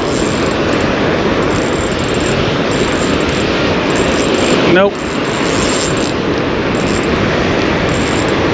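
Steady rushing wind on the microphone mixed with breaking surf.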